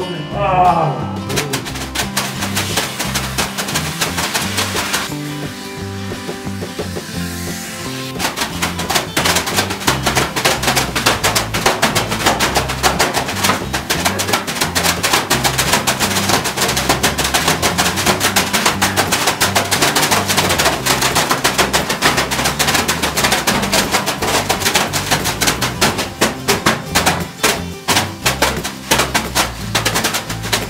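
Leafy bath brooms (veniks) swung by two steamers at once, slapping and rustling over a body in rapid, dense strokes, many a second, from about eight seconds in. Music plays underneath.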